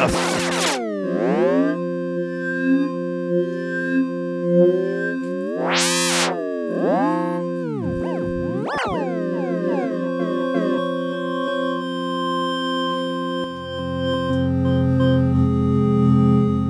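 Teenage Engineering OP-1 synthesizer holding a sustained chord through its CWO effect, which an LFO is modulating, so swooping pitch sweeps slide down and up over the steady notes. One big sweep rises high and falls back about six seconds in. Near the end a lower chord comes in beneath.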